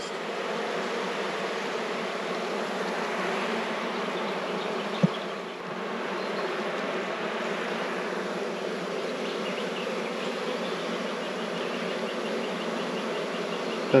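Honeybees buzzing steadily over an opened Langstroth hive box full of bees, with one short click about five seconds in.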